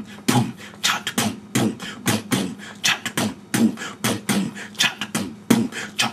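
Old-school vocal beatbox: a drum beat made with the mouth alone, low kick-drum 'boom' sounds alternating with sharper snare-like 'chop' sounds in a steady repeating pattern, about two to three strokes a second.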